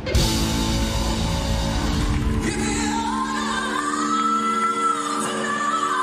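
Live rock band performance with a male lead vocal: a dense band passage for the first couple of seconds, then a long sustained note held over the rest.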